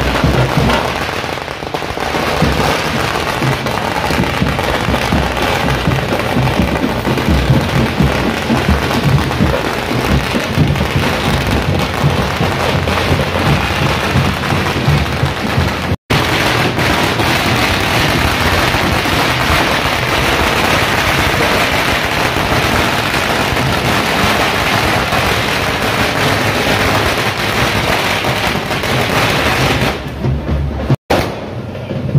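A long string of firecrackers going off in rapid, unbroken crackling, with music underneath; the sound drops out for an instant at an edit about halfway through.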